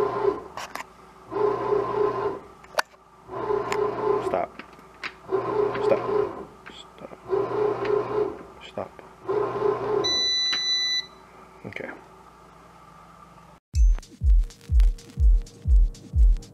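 Sunbeam bread maker's motor running in short pulses, about a second on and a second off, with its freshly replaced drive belt turning the kneading paddle. The machine beeps once near ten seconds in. Near the end, background music with a steady beat of about two thumps a second begins.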